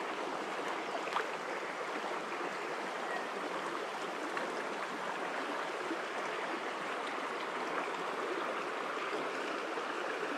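Shallow stream water running steadily over rocks.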